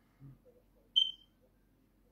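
A single short, high-pitched chirp about a second in, preceded by a faint soft thump.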